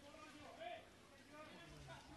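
Faint, distant shouts of football players calling to each other on the pitch, over quiet open-air field ambience.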